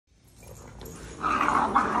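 Small bulldog-type dogs growling as they greet each other. The sound fades in from silence and grows loud about a second in.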